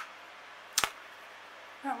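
A single sharp click a little under a second in, from a clear plastic ruler being handled against an orchid bloom.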